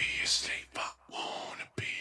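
Quiet whispering voice in several short breathy phrases with brief pauses between them.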